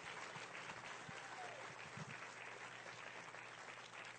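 Audience applauding steadily, easing off slightly near the end.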